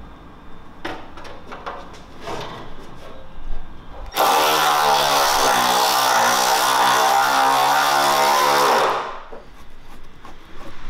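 Light clicks and knocks of parts being handled, then a small handheld power tool's motor runs loudly and steadily for about five seconds, its pitch sagging slightly in the middle and recovering before it stops.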